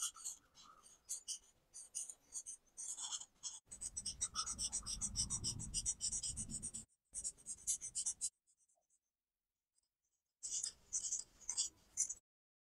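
Alcohol marker tips rubbing on paper in quick back-and-forth strokes as they fill in colour, a dry scratchy sound, with a low rumble underneath for a few seconds in the middle. The strokes break off for about two seconds late on, then start again.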